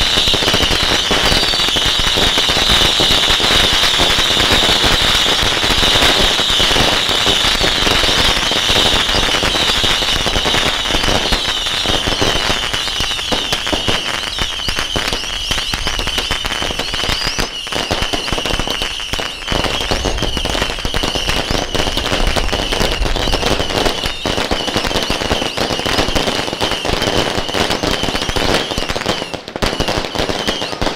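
Strings of firecrackers going off in a dense, continuous crackle of rapid bangs, with a high ringing band above it that is strongest in the first half and fades later.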